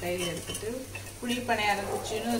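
A metal skewer and spoon scrape and tap in a paniyaram pan as kuzhi paniyarams fry in oil, with some sizzling. A melody of held, stepping notes plays over it.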